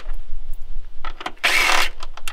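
DeWalt 20V cordless driver spinning a socket on a 10 mm bolt, one short burst of about half a second near the end, after a few light clicks of the socket on the bolt.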